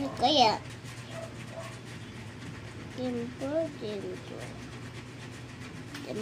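A loud voice in the first half second, then a few soft, short vocal sounds about three seconds in, over a faint steady low hum.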